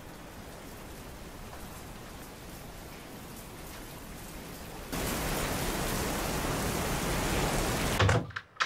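Steady rain hissing, jumping to a much louder downpour about five seconds in and cutting off abruptly at the end.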